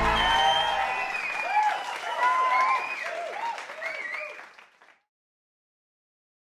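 Outro music ending about a second in, followed by a crowd cheering and clapping that fades away and cuts off to silence at about five seconds.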